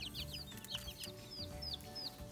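Young chicks peeping: a run of short, high chirps, several a second at first, then more widely spaced.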